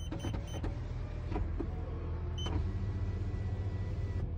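Front passenger power window of a Toyota Sienna minivan, its electric motor running steadily as the glass travels, heard from inside the cabin over a low steady hum. A few short high beeps sound in the first second and again near the middle.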